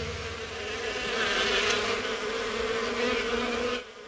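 Cartoon sound effect of bees buzzing around their hive: a steady buzz that dips just before the end.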